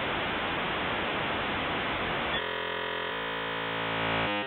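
Steady static hiss; about two and a half seconds in, it turns into a steady electronic buzz with a hum-like tone, which shifts pitch about a second later.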